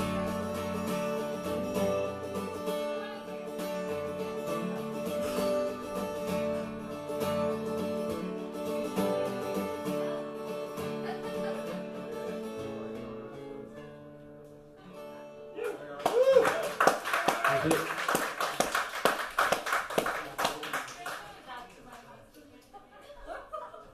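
Guitar playing the closing chords of a folk song, ringing and fading out about two-thirds of the way through. Then a small audience breaks into applause, with a shout as it starts.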